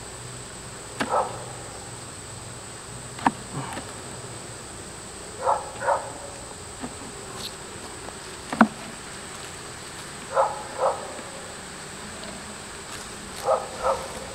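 Honey bees buzzing around an open beehive, with a few sharp knocks and short scraping sounds as wooden hive frames are pried loose with a hive tool and lifted out.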